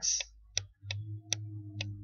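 Computer mouse clicking four times, sharp and irregularly spaced, as letters are hand-written onto a slide. A low steady hum sits underneath from about a second in.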